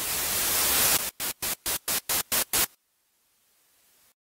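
Electronic white-noise riser in a dance-music remix, swelling up to a peak about a second in, then chopped into a quick run of short stuttering bursts, about five a second, that stop suddenly. A faint swell of noise follows near the end.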